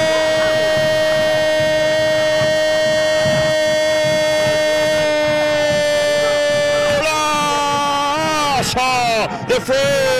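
A radio football commentator's long goal cry, "Gol" held as one loud sustained note for about seven seconds, breaking into shorter shouted syllables near the end; it signals a goal just scored.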